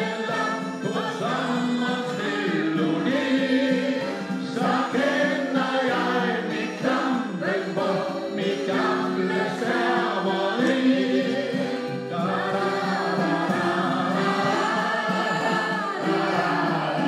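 A group of voices singing a song together in chorus, led by a man singing into a hand microphone, with long held notes.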